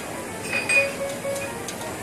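Background music with a clink of tableware about half a second in, over the steady clatter and hum of a buffet and its open kitchen.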